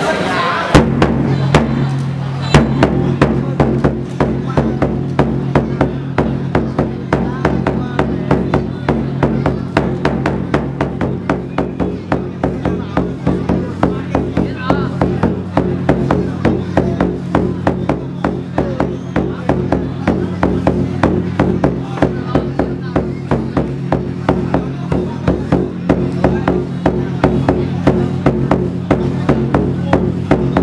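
Rapid, even drumbeats, about three to four strikes a second, keeping time for a traditional Vietnamese wrestling bout, over a steady low droning tone. A couple of single heavy strikes come before the steady beat sets in.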